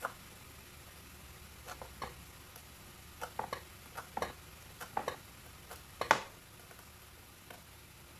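Kitchen knife chopping parsley on a plastic cutting board: irregular taps, a few a second, the loudest about six seconds in. Under them is the faint sizzle of mushrooms frying in a pan.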